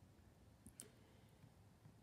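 Near silence with two faint, quick clicks about three-quarters of a second in, from a laptop touchpad being clicked.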